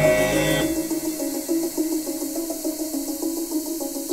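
Recorded song playing in an instrumental stretch between sung lines: a pattern of repeated pitched notes with no voice. The deep bass drops out about a second in.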